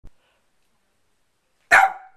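A corgi puppy giving one short, loud bark near the end, after a faint click at the very start.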